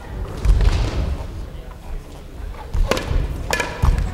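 Sports chanbara sparring in a gym hall: a dull thud about half a second in, then two sharp knocks about three-quarters of a second apart near the end, over voices.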